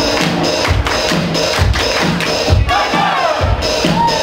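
Live band music with a steady, loud kick-drum beat of about two thumps a second, and a voice sliding up and down in pitch in the second half.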